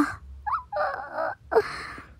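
A woman's anxious, drawn-out groan 'ahhh': a short rising vocal sound about half a second in, then a held 'ahhh' and a breathy exhale, out of frustration at a queue that isn't moving.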